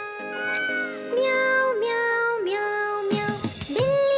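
A cat meowing, three or four drawn-out meows that dip in pitch at the end, over a children's song's instrumental music.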